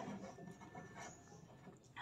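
Faint scratching of a pen writing a word on paper.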